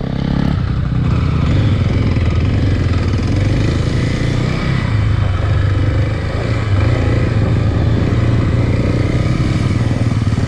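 Kawasaki KLX250 single-cylinder four-stroke dirt bike engine running under way at fairly steady throttle, close and loud on the rider's helmet camera, easing off briefly about six seconds in.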